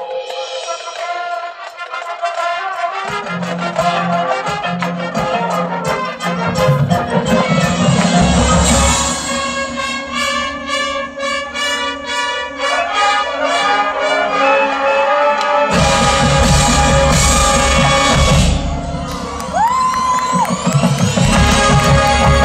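High school marching band playing: saxophones and brass carry the melody. Bass drums and low brass come in about three seconds in, and near the end a single tone slides up and holds.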